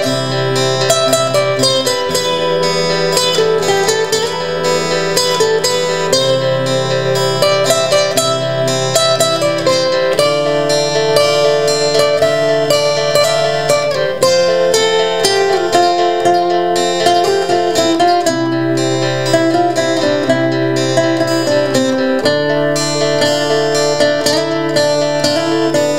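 Two acoustic guitars playing an instrumental passage together, a black steel-string cutaway and a nylon-string classical guitar: a picked melody over low bass notes that change every couple of seconds.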